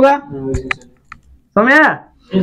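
Chalk on a blackboard: a few short, sharp taps and scrapes as a word is written.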